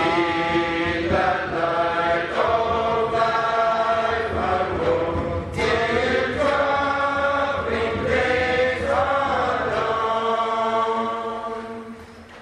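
A choir singing, the voices holding long notes that change every second or so; the singing fades out near the end.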